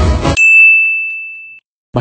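Background music stops abruptly and a single high, bell-like ding rings out and fades over about a second before cutting off into brief silence.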